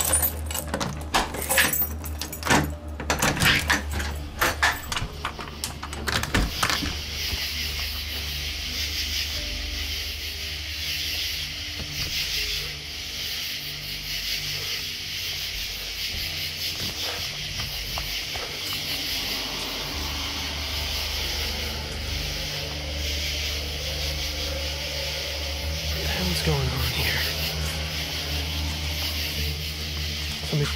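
Keys jangling and clicking as a key is worked into a brass door knob lock, a rapid run of small metallic clicks and rattles over the first six seconds or so. After that, a steady hiss with a low hum underneath.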